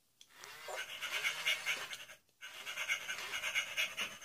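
FurReal Friends electronic toy dog playing its recorded panting sound in two bouts, with a short break a little past two seconds in.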